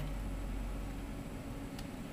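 Faint handling of a red plastic washer-shifter housing in the hands, with one light click near the end, over a steady low background hum.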